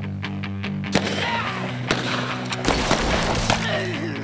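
Three sharp gunshots about a second apart, from 9mm handguns and 12-gauge shotguns, under steady background music.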